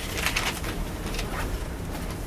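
Whiteboard marker squeaking against the board in short writing strokes, the loudest about half a second in, over a steady low room hum.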